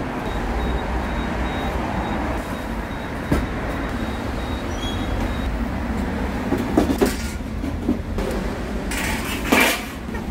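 Metal crate frame knocking and clanking as it is pushed into the cargo box of a small truck, a sharp knock about three seconds in and a cluster of knocks around seven and nine seconds. Underneath runs a steady low traffic rumble.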